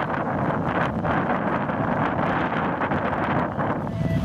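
Wind buffeting the microphone: a steady, loud rushing noise with irregular gusty surges.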